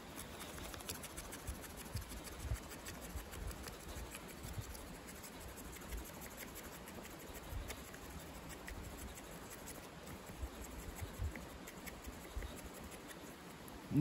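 ESEE CR 2.5 knife blade shaving thin curls off a stick of dead wood to make a feather stick: faint, repeated scraping strokes.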